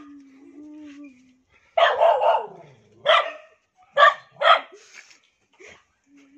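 A dog whining in one long held note, then barking about five times over the next few seconds.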